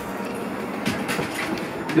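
People going in through a house doorway: a steady rustling clatter with a few sharp clicks about a second in.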